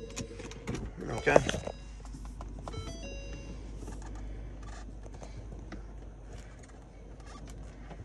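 Low steady hum in the cabin of a 2013 Ford C-Max Hybrid just switched on and sitting in park, with a few faint clicks and a short electronic chime about three seconds in.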